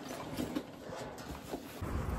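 A few light knocks, clicks and rustles as a handbag is handled and packed, followed near the end by a sudden change to a steady low rumble outdoors.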